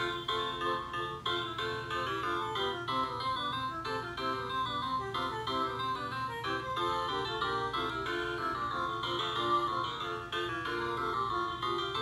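LeapFrog Learn & Groove Color Play Drum toy playing an electronic classical-music melody through its small speaker, in a keyboard-like tone.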